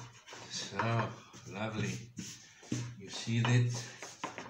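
Short, unworded sounds from a man's voice while a long, thin rolling pin rolls and scrapes over floured phyllo dough on a tabletop.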